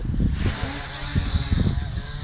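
MJX Bugs 3 quadcopter's brushless motors and propellers buzzing in flight, a steady high hiss over uneven low rumbling.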